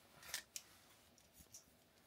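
Near silence with a few faint, short clicks and light scrapes of small hand tools, a pen and calipers, being picked up and handled on a workbench.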